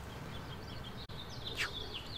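Outdoor birds chirping and twittering in short high notes over steady low background noise. The chirps thicken from about a second in, and a louder falling note comes about one and a half seconds in.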